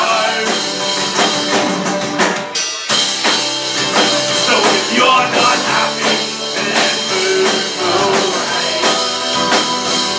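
Live folk-punk band playing loud and fast: strummed acoustic guitar, electric guitar, bass and drum kit. The low end drops out briefly a little under three seconds in before the full band comes back in.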